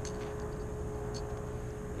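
Steady low rumble of a distant motor with a faint steady hum running through it, and a couple of faint ticks.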